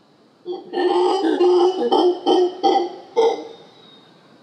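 Howler monkey calling: a loud run of hoarse, guttural pulses, one long call followed by about four short ones, starting about half a second in and stopping a little after three seconds.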